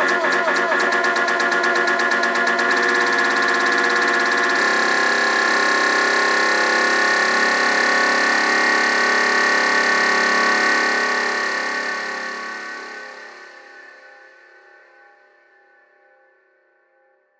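House music ending a DJ mix: a rapid repeating rhythm stops about four seconds in, leaving sustained notes that ring on and then fade out over the last five seconds.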